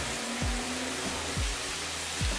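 Background music with a steady beat, over the even hiss of crushed onion, garlic and chili pepper sizzling in oil in a frying pan.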